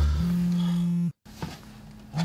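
A classical, operatic voice holding one long low note, sung as vocal practice. It breaks off abruptly about a second in.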